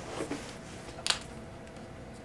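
A single short, sharp click about a second in, as a Sharpie marker is uncapped, with faint handling of the balloons over quiet room tone.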